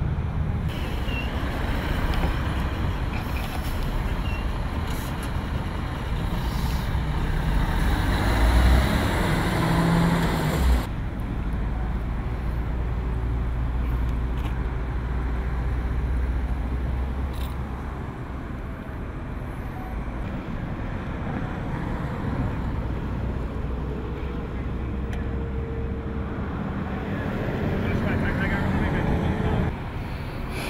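Steady low rumble of idling diesel fire engines at a freeway crash scene, with a general noisy hum over it. A brief low thump comes about eleven seconds in, where the sound changes abruptly and grows duller.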